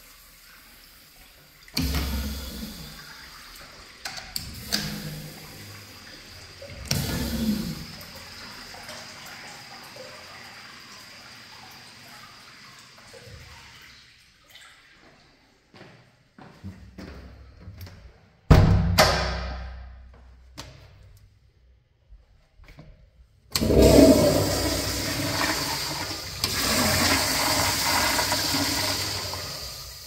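A Kohler wall urinal's flush valve goes off about two seconds in, a sudden loud rush of water that fades slowly over about ten seconds. A brief loud burst follows, dying away within a couple of seconds, and near the end a commercial flushometer toilet flushes with a long, loud rush of water into the bowl.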